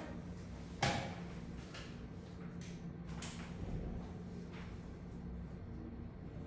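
Quiet room with a steady low hum, broken by one sharp tap about a second in and a few faint ticks a couple of seconds later.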